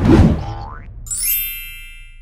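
Short sound-effect sting for an animated channel logo: a loud hit at the start, a quick rising glide, then bright chiming tones from about a second in that fade away over a low hum.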